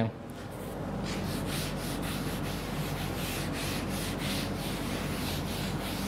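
Blackboard eraser rubbed across a chalkboard, wiping off a chalk drawing in repeated back-and-forth strokes. The rubbing starts about half a second in and keeps on steadily.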